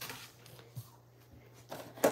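Faint handling noises of objects being moved on a tabletop: a few light knocks and clicks, over a low steady hum.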